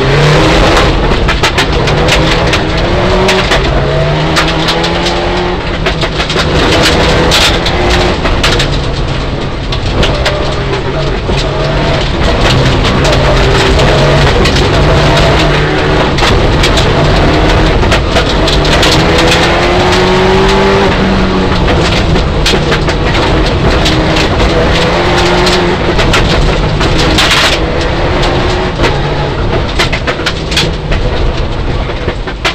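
Mitsubishi Lancer Evolution IX rally car's turbocharged four-cylinder engine, heard from inside the cabin, repeatedly rising and falling in pitch as it accelerates and shifts gears at speed on gravel. Stones clatter against the car throughout.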